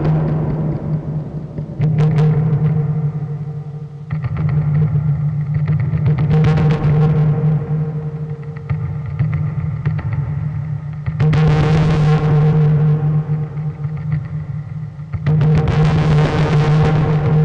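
Fuzzrocious Empty Glass Drum Mod pedal sounding through an amp: a harsh, distorted drone holding one steady low pitch. Sudden loud swells come every two to four seconds as the enclosure is struck and its internal piezo contact mic feeds the hits through the drive circuit.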